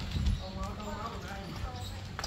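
A two-wheeled hand truck loaded with a sack rolls over rough dirt ground with a low rumble, its wheels knocking, loudest just after the start. Faint voices sound in the middle of the clip.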